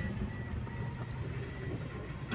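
Low, steady engine and road rumble heard inside the cabin of a vehicle driving slowly along a rough road, with a faint on-off high-pitched tone above it.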